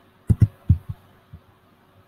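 A few short, dull knocks from a computer keyboard and mouse being worked: three close together in the first second, then two fainter ones.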